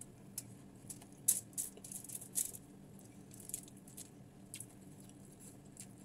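Close-up chewing of a hand-fed mouthful of rice and crispy fried tilapia: irregular crunches and wet mouth clicks, roughly two a second, the loudest about a second in.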